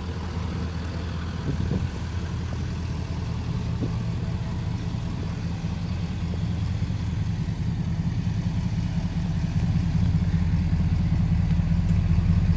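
A 2011 Ford F-350's 6.7-liter Power Stroke V8 turbodiesel idling with a steady low hum, growing slightly louder near the end.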